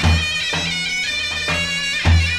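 Bulgarian folk dance music: a reedy wind melody over a steady drone, in the manner of a bagpipe, with a low drum beat marking time.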